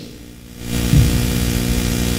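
A steady hum with a buzzy haze above it sets in about half a second in and holds level.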